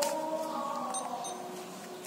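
Verifone VX675 card terminal's built-in thermal printer running, feeding out a transaction receipt with a steady whine that fades away in the second half. Two brief high beeps about a second in.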